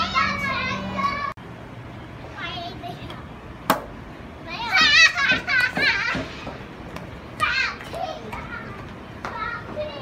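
Young children's high-pitched shouting and laughing as they play, loudest about halfway through, with one sharp click just before.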